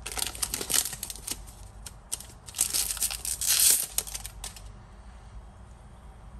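Foil wrapper of a Pokémon card booster pack crinkling and tearing as it is opened and the cards pulled out. It comes in two bursts of crackling, the second, about two and a half seconds in, the loudest, and dies down after about four and a half seconds.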